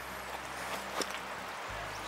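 Quiet outdoor ambience: a faint, steady hiss with one light click about a second in.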